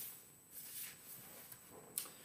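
Quiet room tone with a faint steady high whine, a soft breath about half a second in, and a short click just before the end.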